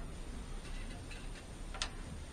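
A few faint, irregular clicks from a tape measure being handled with its blade pulled out, the clearest near the end.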